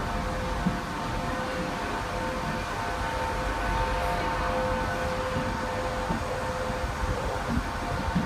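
A train on the line giving out a steady whine of several held tones over a low rumble. The lowest tone fades out a little past halfway.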